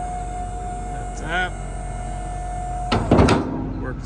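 Power lift gate's electric-hydraulic pump motor running with a steady whine over the Power Stroke V8 diesel's idle. About three seconds in the whine stops with a loud metal clank from the gate.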